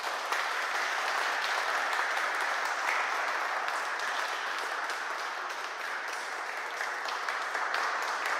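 Audience applauding steadily, a dense patter of many hands clapping in a hall.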